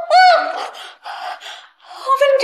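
A woman's short, high-pitched cry, then a few gasping breaths, as a gag is taken from her mouth.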